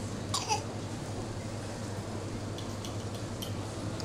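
Steady low hum of room ambience, with a toddler's brief mouth sound about half a second in, a short falling squeak, then a few faint ticks.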